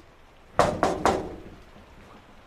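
Three quick knocks or thumps, about a quarter second apart, each with a short ring-out in a small room.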